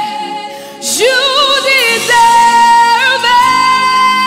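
A woman singing a gospel worship song, her notes wavering with vibrato. There is a short breath about a second in, then long held notes.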